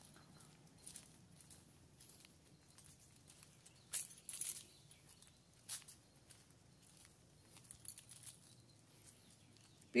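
Faint, irregular footsteps scuffing on a concrete walkway, with a few louder scuffs around the middle.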